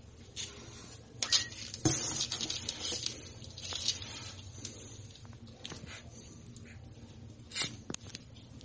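Kittens scrabbling and being handled in a cardboard box: claws scratching and bodies bumping on the cardboard, with sharp knocks about a second in and a busy stretch of scratching over the next couple of seconds, then another knock near the end.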